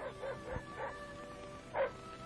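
A cartoon dog giving a few short barks in the first second, over soft background music with held notes.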